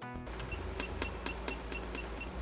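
Hot air rework station beeping rapidly, short high pips about six a second starting about half a second in, as its airflow setting is stepped down to 10%, over a steady low hum.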